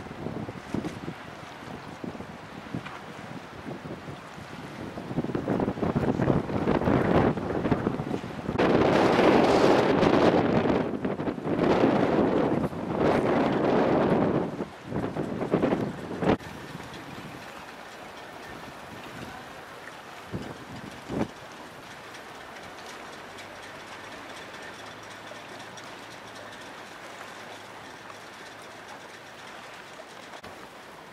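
Strong wind buffeting the microphone in rough gusts, loudest for several seconds in the middle, then easing off about halfway through to a steady, quieter rush of wind and water.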